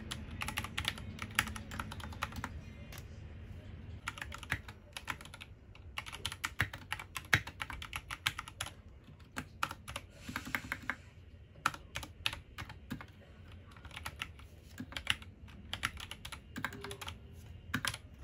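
Typing on an Anne Pro 2 60% mechanical keyboard with brown tactile switches: quick runs of key clacks broken by short pauses.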